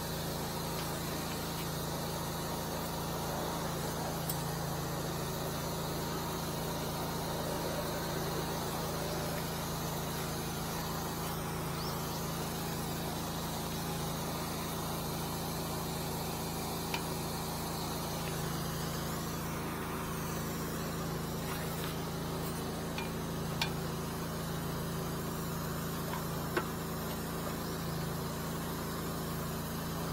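An engine running steadily at idle, a constant low drone, with a few faint clicks in the second half.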